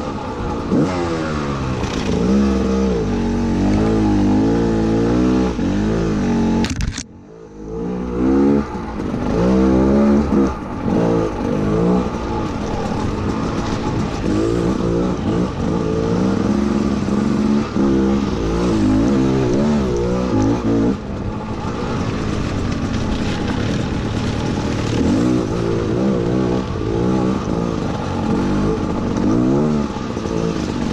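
Gas Gas EC200 two-stroke dirt bike engine revving up and down continually under changing throttle on a trail ride. About seven seconds in, the engine sound drops sharply for about a second before picking up again.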